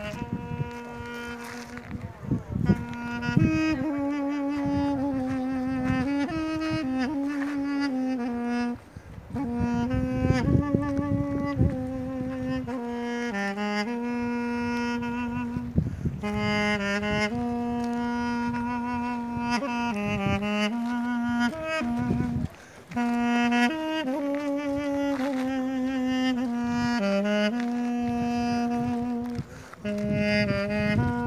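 Armenian duduk, a double-reed woodwind, playing a slow solo melody of long held notes with short bends between them, breaking off briefly for breath about 9 and 22 seconds in.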